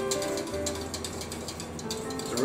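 Metal whisk scraping and clicking against a stainless steel saucepan in quick, irregular strokes as flour is whisked into turkey pan drippings to thicken gravy.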